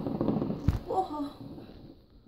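A single distant firework bang, short and deep, about two-thirds of a second in.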